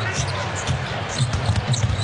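Basketball dribbled on a hardwood court, a low bounce about every half second.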